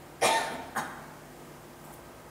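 A person coughing twice, a longer cough and then a short one about half a second later.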